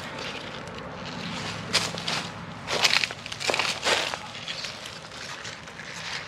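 A series of irregular crunching and rustling sounds from garden plants and soil being moved through or handled, bunched in the middle, over a faint steady low hum.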